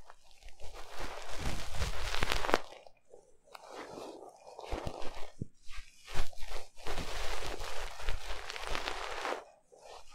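Fluffy ear picks rubbing and scratching against the silicone ears of a 3Dio binaural microphone, in crackly strokes a couple of seconds long with short pauses between.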